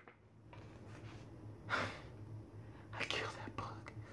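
A man's soft breathy whispers and exhalations close to the microphone, three or four short puffs, over a faint steady low hum.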